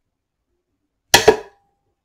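Homemade supercapacitor spot welder, switched by a solenoid, firing a weld on 18650 lithium-ion cells: two sharp cracks a fraction of a second apart about a second in, with a brief ring after them.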